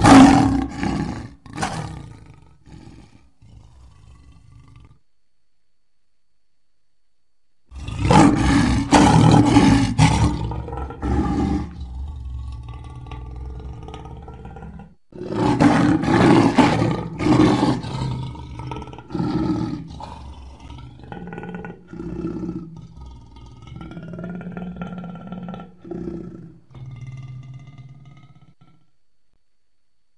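Custom-made Tyrannosaurus rex roar sound effects. A short roar at the start dies away, then after a few seconds of near silence come two long, rough roars, the second drawing out into lower growls.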